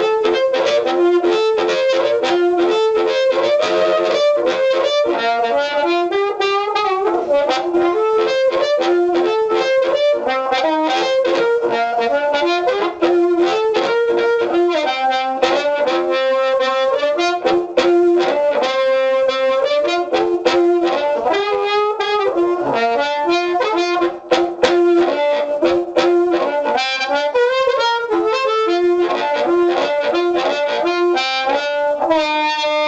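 Blues harmonica played amplified through a 1940s Shure Brown Bullet microphone fitted with a CR element, into an amp turned up just off zero with a bit of delay echo. It plays continuous phrases that keep coming back to one held note.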